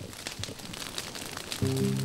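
Burning grass crackling with irregular sharp pops over a soft hiss. A sustained low music chord comes in abruptly near the end.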